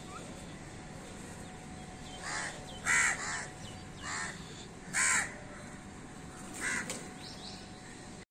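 Crows cawing: about five short caws, the loudest about three and five seconds in, over a steady background hiss.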